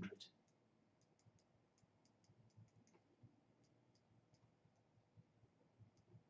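Near silence broken by about a dozen faint, light clicks of a pen or stylus tapping on a writing surface as words are handwritten, mostly in the first four seconds.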